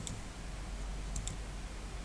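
Two quick, faint clicks close together just over a second in, over a steady low hum: a computer mouse being clicked to advance presentation slides.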